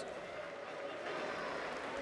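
Faint, steady stadium crowd noise from the stands during play, an even wash of sound with no single event standing out.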